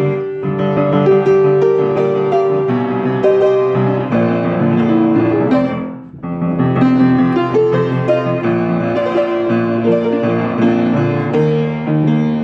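Solo piano played fast with both hands: a dense, continuous stream of notes, with a short dip in loudness about halfway through before the playing picks up again.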